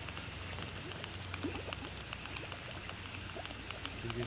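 Steady high-pitched insect chorus, with faint scattered ticks and small splashes as a snakehead topwater lure is worked across the creek surface.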